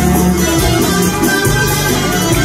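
A live Arabic orchestra playing, with keyboards, sustained melodic notes, a bass line and a steady percussion beat.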